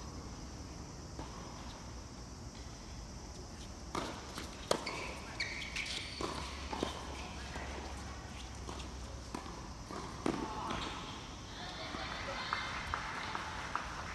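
Tennis balls struck by rackets during a doubles rally: a run of sharp hits starting about four seconds in, irregularly spaced about half a second to a second apart, the loudest near the start. Players' voices follow near the end, once the point is over.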